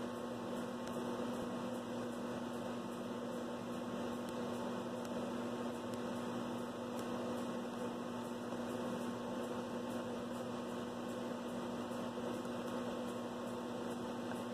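Steady electrical hum with one constant low tone, unchanging.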